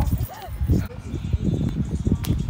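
Young men laughing loudly, with yelping bursts of laughter and shouted voices.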